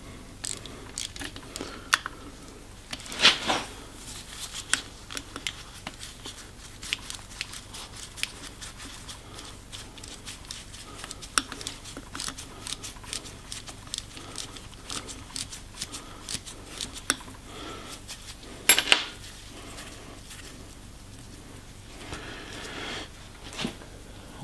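Small metal clicks and taps of a 0BA socket being worked by hand on the bottom nuts of a diesel injection pump's governor housing, with two louder clanks, one about three seconds in and one about three-quarters of the way through.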